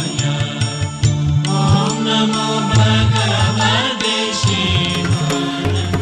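Devotional mantra chanting sung to music, with sustained sung lines over a low drone and a steady beat of sharp percussive strikes.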